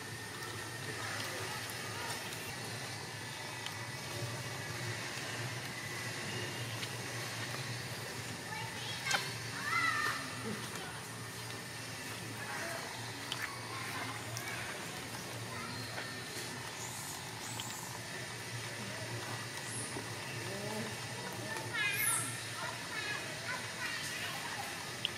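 Outdoor ambience with a steady low hum and faint distant voices. A short high-pitched call comes about ten seconds in, and a quick run of high falling chirps near the end.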